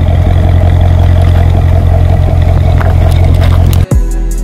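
Corvette's V8 engine running with a loud, steady, deep exhaust rumble that cuts off suddenly near the end.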